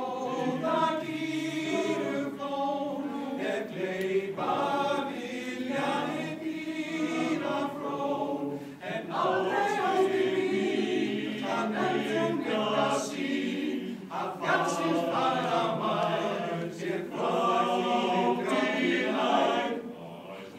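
A mostly male choir singing a cappella in Icelandic. The phrases are separated by short breaks.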